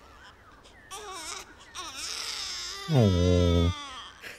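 An infant crying thinly, in wavering high-pitched wails, from about a second in. About three seconds in, a man's low voice sounds briefly and louder than the cry.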